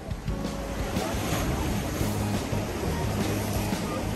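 Ocean surf washing against coastal rocks, mixed with background music that has sustained low notes.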